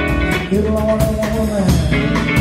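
Blues-rock trio playing live: electric guitar over bass and drums with a steady beat, and one long held note from about half a second in until near the end.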